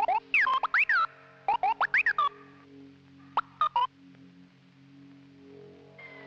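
R2-D2-style robot beeps and whistles: quick electronic chirps sliding up and down in pitch, in three short bursts, over a steady low electronic hum.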